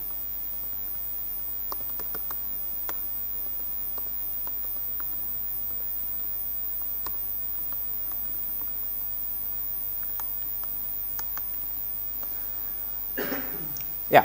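Sparse, irregular faint clicks of laptop keyboard typing over a steady mains hum, with a short breathy rush near the end.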